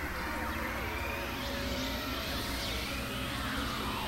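Experimental electronic noise music from synthesizers: many overlapping sliding tones, some rising and some falling, over a dense hiss and a low fluttering rumble, holding a steady level.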